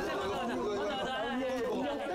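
Several young men talking over one another in Korean, clamouring excitedly ("Ma'am, I want this one").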